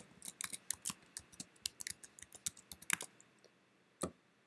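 Computer keyboard keys being typed in a quick run of light clicks as a password is entered, stopping about three seconds in.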